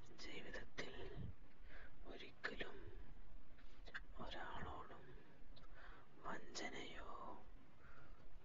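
A person whispering in soft, breathy phrases with short pauses between them.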